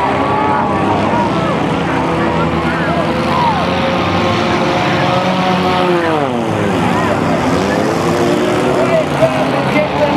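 Several demolition derby cars' engines running and revving at once, their pitches rising and falling over each other; one engine's pitch drops steeply about six seconds in.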